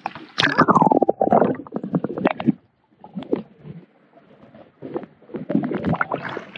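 Water gurgling and sloshing around a camera dipped at the surface. A rapid bubbling run near the start drops in pitch, then scattered splashy clicks follow, with a quieter spell midway.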